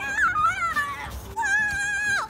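A young child's long, high-pitched squeals: two drawn-out, wavering cries with a short break about a second in.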